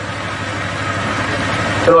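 Steady low hum under a hiss of background noise, with the next spoken word starting at the very end.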